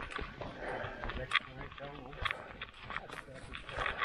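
Footsteps and the irregular knocks and rattles of mountain bikes being pushed up a dirt forest track, with faint voices.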